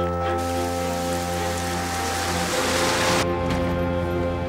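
Dramatic background score of low held chords, with the harmony shifting about two and a half seconds in. A loud rushing hiss rises over it from about half a second in and cuts off suddenly a little after three seconds.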